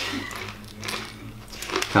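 A low steady hum with a few faint, short rustles and clicks in between.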